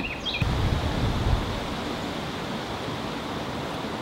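Steady outdoor background hiss with no clear single source, plus a low rumble in the first second or so.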